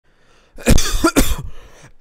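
A person coughing twice, two short, loud coughs about half a second apart.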